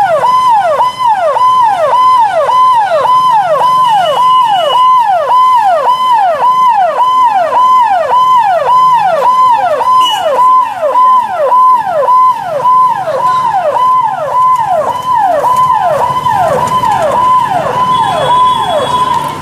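Police siren sounding in a fast, even cycle of about two a second, each cycle holding a high note and then dropping sharply in pitch.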